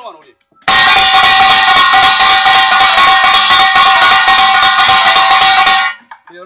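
Kkwaenggwari, the small Korean brass gong, struck very rapidly with a mallet in a loud, continuous ringing roll that starts about a second in and stops abruptly just before the end.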